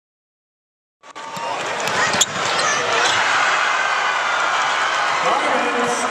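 Dead silence for about a second, then the sound of a basketball game in a large arena: steady crowd noise with a ball bouncing on the court, including one sharp knock about two seconds in.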